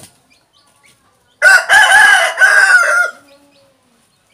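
A rooster crowing once, a loud multi-part cock-a-doodle-doo that starts about a second and a half in and lasts under two seconds.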